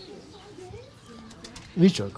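Faint low cooing of a bird under background noise, then a brief loud burst of a man's voice near the end.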